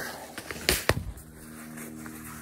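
Handling noise from a rifle and its scope cover being moved in the hands: two short, sharp clicks close together a little under a second in, with a few softer ticks around them.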